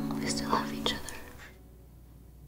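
The song's last sustained chord fading out, with two short whispered sounds about half a second apart during the fade. The sound has died away to low room hiss by about a second and a half in.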